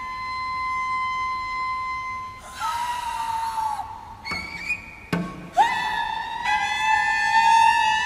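Two cellos playing a slow contemporary duo in high, held notes that bend slightly in pitch. A rough, scratchy bow attack comes about two and a half seconds in, and a sharp struck attack about five seconds in, before the long notes resume.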